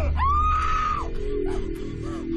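A woman's high-pitched scream that rises and then holds for about a second before breaking off, over a low, sustained horror-film score.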